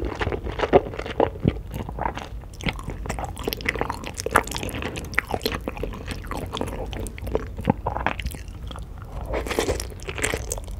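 Close-miked chewing of a mouthful of saucy food, with many short, irregular wet clicks and crunchy bites.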